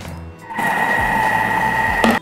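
Thermomix motor starting about half a second in and running steadily with a high whine, stirring a thick paste of ground peanuts into peanut butter. It cuts off at the end.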